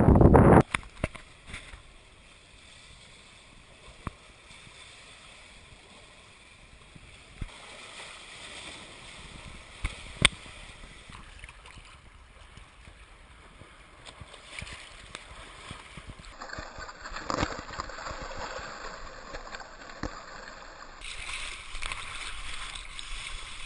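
Faint water lapping and sloshing close to a waterproof action camera at the surface of the bay, with a few sharp clicks, getting louder near the end as the water gets choppier around a paddled surfboard.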